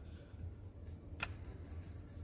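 A button click on a Konquest KBP-2704A digital upper-arm blood pressure monitor, followed quickly by three short, evenly spaced high-pitched beeps from its beeper.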